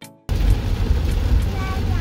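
A music note that cuts off a quarter second in, then steady road noise inside a car driving in heavy rain: a loud low rumble with a hiss over it. Faint voices come in near the end.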